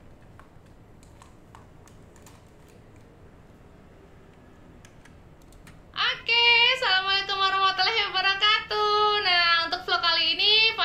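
Faint scattered clicks of computer mouse and keyboard use, then about six seconds in a woman's voice starts loudly from a played-back video, in long high-pitched phrases.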